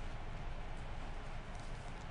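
Courtroom room tone through the court's microphone feed: a steady hiss and low hum, with a few faint soft clicks.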